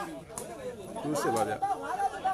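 Several people talking over one another, with a few short sharp taps: one about a third of a second in and a couple a little past the one-second mark.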